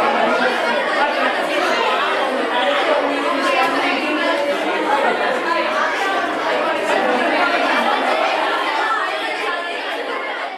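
A roomful of students, mostly young women, chattering at once in a classroom: many overlapping voices with no single speaker standing out, at a steady level throughout.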